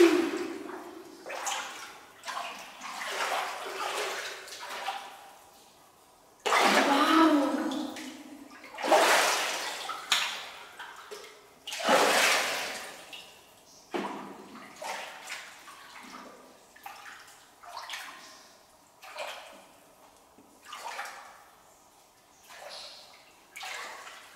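Shallow water splashing and sloshing as hands reach in to scoop up mussels and feet wade, in irregular bursts, the loudest three a few seconds apart in the middle.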